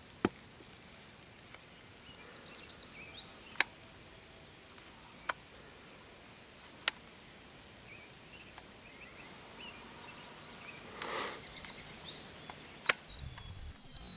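Quiet rural outdoor ambience with a small bird singing two short bursts of quick high chirping notes, and a handful of sharp, isolated clicks spread irregularly through it.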